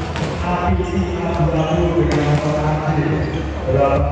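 Volleyballs being struck and bouncing on an indoor court during warm-up: a few sharp smacks, the clearest about two seconds in, over a continuous amplified voice in the hall.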